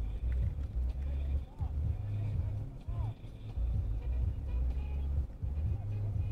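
Faint, muffled voices some way off, heard over an uneven low rumble.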